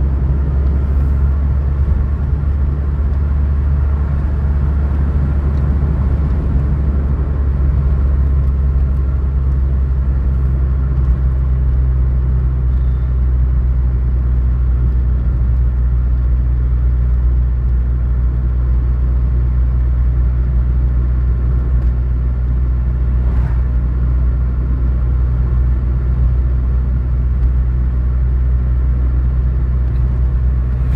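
Steady low rumble of a car's engine and tyres on asphalt, heard from inside the cabin while driving at a constant pace.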